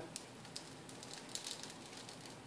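Faint, scattered crackling ticks as a multi-wire soap cutter's wires slice through a log of soap.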